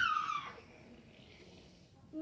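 A child's high-pitched, animal-like cry or squeal that falls in pitch and fades out about half a second in.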